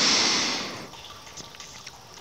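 A long breath drawn in close to a headset microphone: a rushing hiss that is loudest at the start and fades away within about a second.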